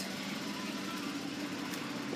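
Steady background hum and hiss with a faint low steady tone, no sudden sounds.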